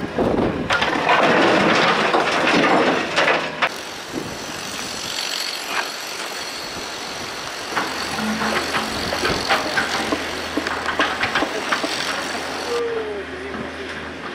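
Excavator loading concrete demolition rubble into a dump truck: loud scraping and clattering for the first three or four seconds. After that, quieter outdoor noise with a low steady engine hum and a few clicks.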